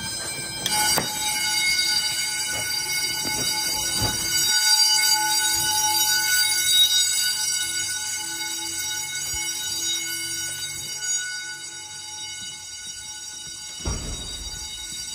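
School fire alarm set off at a manual pull station, sounding a continuous steady high-pitched tone that starts suddenly. It grows louder partway through and eases off near the end, with a few knocks along the way.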